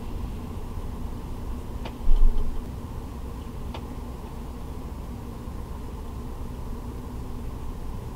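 Steady low rumbling hum, with one brief, much louder low thump about two seconds in and a few faint light clicks.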